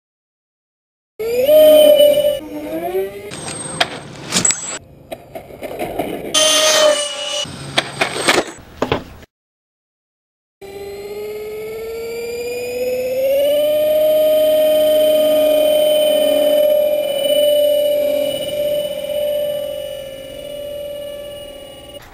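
Electric motors of an RC A-10 Warthog model jet (twin ducted fans plus propellers), first whining in short uneven bursts of rising and falling pitch with sharp clicks. After a brief cut, the motors give one steady whine that rises in pitch as the throttle comes up for the take-off run, holds, and fades near the end.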